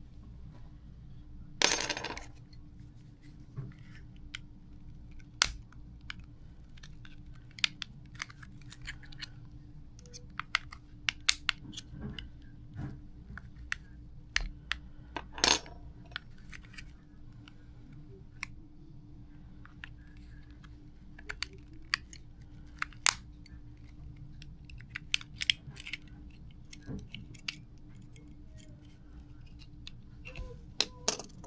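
Plastic shell of an Audi A8 smart key fob being pried open with a flat tool: a scatter of small sharp plastic clicks and snaps, with louder cracks about two seconds in and again around the middle, as the case halves come apart.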